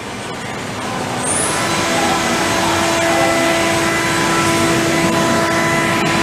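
Spindle of a Fanuc Robodrill α-D21MiB5 vertical machining centre running at about 10,000 rpm. A hiss grows louder over the first two seconds, then a steady whine of several even tones holds over it.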